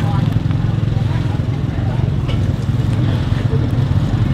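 A steady, loud low rumble with faint voices in the background.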